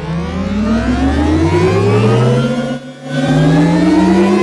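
Synthetic Audi R8 e-tron e-sound, played from a lab accelerator pedal: an electronic, engine-like tone that rises steadily in pitch like revving, dips briefly about three seconds in, then rises again.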